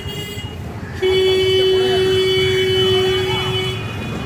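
A vehicle horn sounding one long steady note, held for about three seconds from about a second in.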